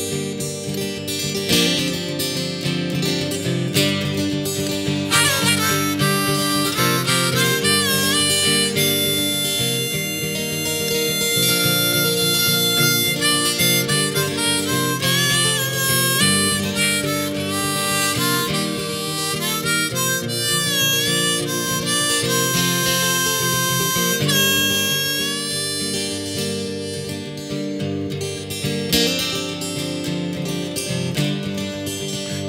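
A harmonica solo with bending notes over a strummed acoustic guitar, in an instrumental break of a folk song. The harmonica comes in about five seconds in and stops a couple of seconds before the end, leaving the guitar alone.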